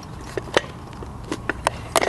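A series of short sharp clicks and light scraping as a chrome bezel ring is worked around a classic VW speedometer's steel housing by hand, metal on metal.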